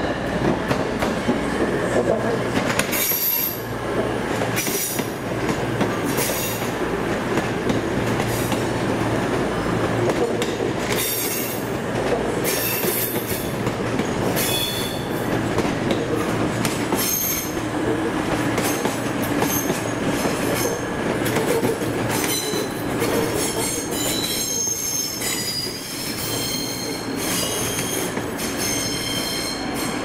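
Arriva CrossCountry Class 221 Super Voyager and Class 220 Voyager diesel-electric units, nine cars, arriving under the rumble of their underfloor diesel engines. Many high-pitched wheel and brake squeals come more often in the second half as the train slows to a stop at the platform.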